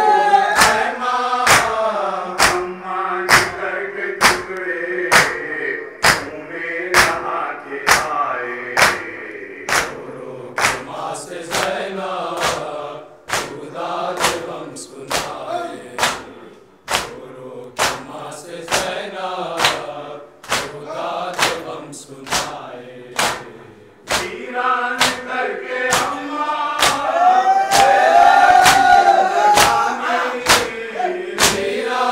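Men's chorus chanting a noha, a Shia mourning lament, led by a reciter over a microphone and PA. Open-palm chest-beating (matam) keeps time, with sharp slaps in unison about one and a half times a second.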